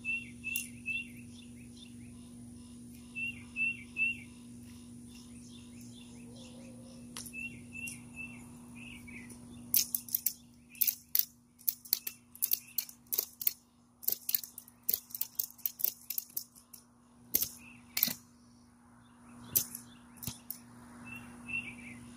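A bird chirping in quick groups of three short notes over a steady low hum. From about ten seconds in comes a long run of sharp, irregular clicks, the loudest sound here, from a ratchet strap being cranked tight around a rolled-up inflatable water slide.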